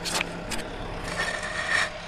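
A few short scraping and knocking noises over a steady low hum, with a longer, rougher scrape in the second half.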